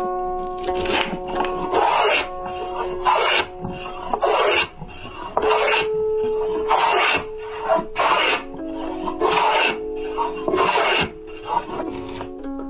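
Wide chisel and plane being pushed along a wooden block, shaving off long curls: about nine rasping scrapes, roughly one a second, each lasting about half a second. Background music plays throughout.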